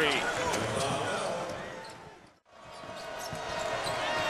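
Arena crowd noise at a college basketball game, carried through a TV broadcast. It fades out to a brief silence at a cut between highlights about two and a half seconds in, then fades back in.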